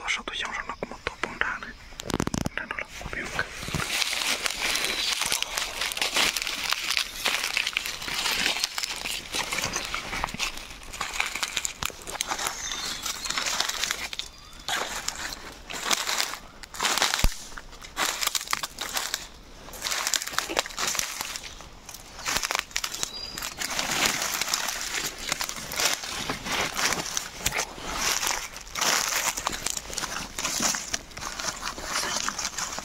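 Dry bamboo leaf litter crunching and rustling under footsteps and hands, an uneven run of crackles throughout.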